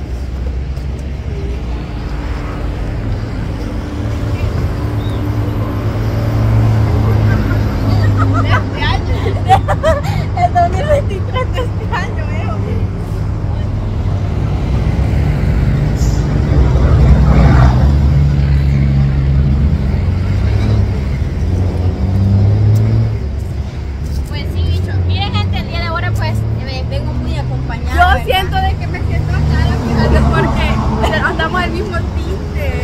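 Highway traffic passing, with heavy vehicles' engines giving a low rumble that swells and fades as they go by. Voices come through at times.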